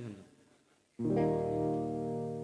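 An electric guitar chord struck once about a second in and left ringing, full and sustained.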